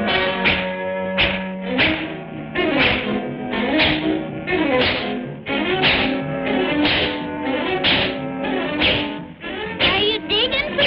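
Orchestral cartoon score with sharp whacking hits falling about once a second, on the beat.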